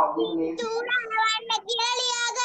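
A young child's high voice, drawn out and sing-song, in several runs of words.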